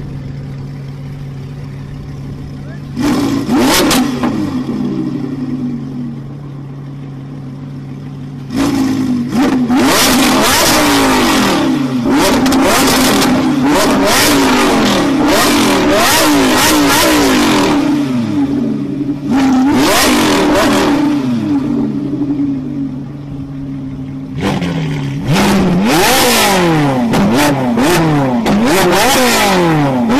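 Lamborghini Huracán LP610-4's V10, fitted with an Fi valved cat-back exhaust and catless downpipes, idling and being free-revved at a standstill. There is one short blip about three seconds in, then a long run of quick revs rising and falling over and over. Near the end a Ferrari 458 Italia's V8 idles briefly and is then revved in the same repeated way.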